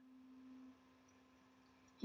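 Near silence with a faint, steady low hum, slightly louder for the first moment.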